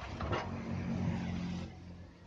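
A low motor hum, like an engine running, swells and then fades out shortly before the end, with a short rustle about a third of a second in.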